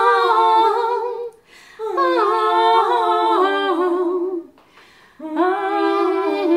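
Two female voices singing a slow melody in two-part harmony, with vibrato, in three phrases separated by short breaths about a second and a half in and about four and a half seconds in.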